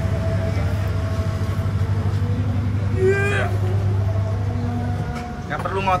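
Tyre-changing machine's electric motor running with a steady low hum while a motorcycle tyre is worked onto its rim, easing off shortly before the end. A brief voice sound about three seconds in.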